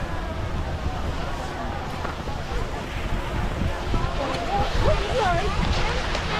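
Wind rumbling on the microphone of a skier's camera as they glide down a groomed slope, with skis hissing over the snow and a hubbub of distant voices behind; a few voices come through more plainly near the end.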